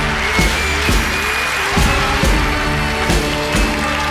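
Rock and roll band music, an instrumental stretch between vocal lines, with held chords over a steady drum beat.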